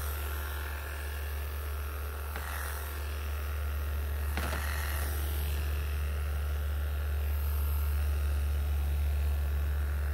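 Wahl KM2 electric pet clippers with a size 40 surgical blade running with a steady low hum while shaving a long-haired Persian cat's belly fur, with a couple of brief rustles a few seconds in.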